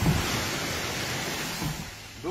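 Steady rushing noise of surf and wind across the microphone, easing off near the end, with a short low thump right at the start.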